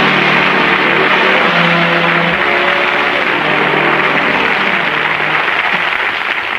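Audience applauding while an orchestra plays sustained notes underneath, heard on an old radio broadcast recording. The applause dies down near the end.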